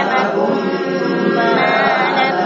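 Quranic recitation chanted in unison by a group of voices, a continuous melodic line with long drawn-out notes.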